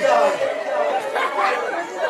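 Speech only: a man's voice speaking in bursts, with other voices chattering.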